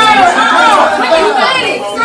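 A room full of people talking and calling out over one another, with no single voice clear.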